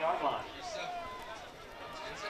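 Faint men's voices without clear words, over outdoor ambience.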